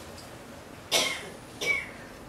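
A man coughing twice, two short sudden coughs about two-thirds of a second apart.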